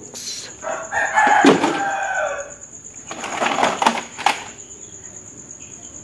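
A rooster crows once, starting about a second in, followed by a few sharp plastic clicks and knocks of toy vehicles being handled.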